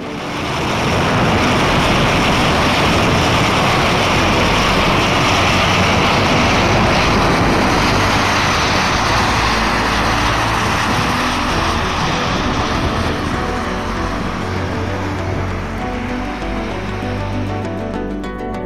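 Steam venting from a fumarole inside a stone cairn: a loud, steady rushing hiss that eases slightly in the last few seconds.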